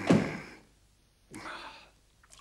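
A man sighing heavily with falling pitch, loudest just at the start, then a second, softer voiced sigh about a second and a half in.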